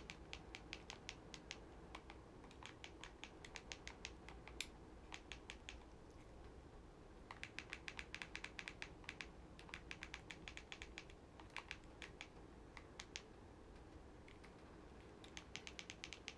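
Faint typing: runs of quick, light clicks of taps on keys or a screen, coming in several bursts with short pauses between them, as a search is entered.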